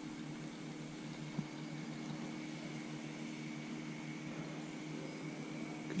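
Faint steady hiss with a low hum under it, and one small click about a second and a half in.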